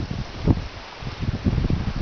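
Wind buffeting the camera's microphone, an uneven low rumble with a stronger gust about half a second in.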